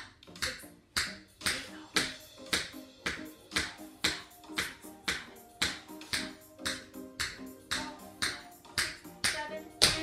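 Toe taps of a tap shoe's metal tap on a hard floor, a steady beat of about two a second, with a louder tap near the end, over background music.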